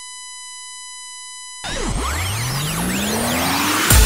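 A steady, high electronic beep tone, like a test tone, held for about a second and a half and then cut off. It is followed by a whooshing riser sound effect that climbs in pitch and ends in a hit near the end.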